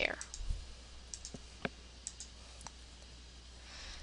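Computer mouse button clicking several times, short sharp single clicks scattered over the first three seconds, the loudest about a second and a half in, over a faint steady low hum.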